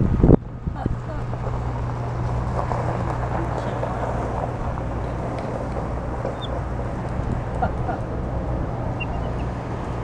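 A loud low thump on the microphone right at the start, then steady outdoor background: a low hum with faint, indistinct voices in the distance.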